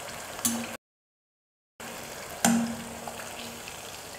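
Thattu vadai (small flat rice-flour crackers) frying in hot oil in a kadai, a steady sizzle, broken by about a second of dead silence near the start. About two and a half seconds in there is one sharp knock with a brief ring as the wire skimmer lifting them out strikes the pan.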